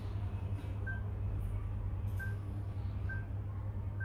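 Blackview BV9500 Plus smartphone giving short touch-feedback beeps as menu items are tapped: four brief high tones, roughly a second apart, over a steady low hum.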